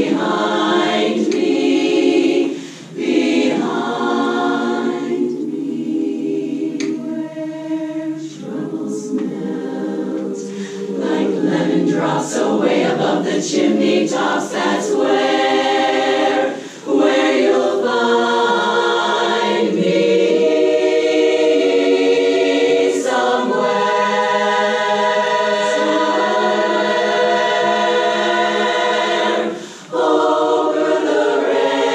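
Women's a cappella chorus singing in close harmony, with sustained chords broken by short breaths about three seconds in, again past the middle, and just before the end.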